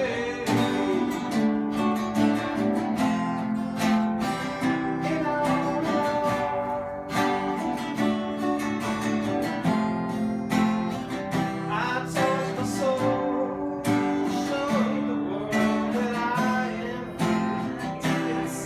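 Two acoustic guitars played together, strumming chords in a steady rhythm.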